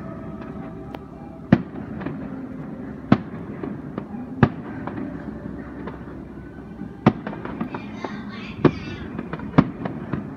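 Aerial firework shells bursting some way off: about six sharp bangs spaced a second or two apart, with smaller pops between them.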